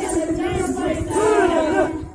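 A group of voices loudly chanting a Muharram song together, shouted rather than sung smoothly, with low thuds underneath.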